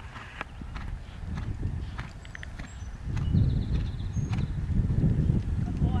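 Horse cantering on a sand arena: soft, irregular hoofbeats. A low rumble of wind on the microphone grows louder about halfway through.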